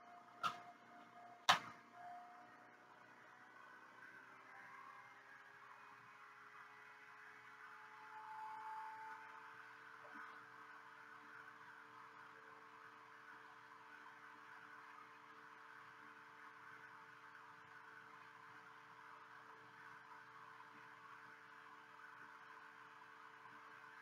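Near silence: a faint steady hum of room tone, with two light knocks in the first two seconds.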